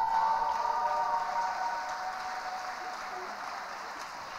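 Applause in an ice arena, with a few steady held tones above it that fade out about three seconds in.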